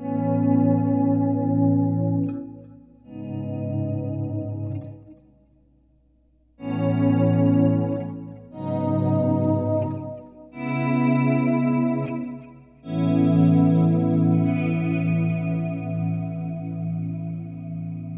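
Electric guitar played clean through a Line 6 Helix preset modelled on a Vox AC30 amp ("AC30 Swell 2"): sustained chords left to ring, in six phrases with short gaps between them.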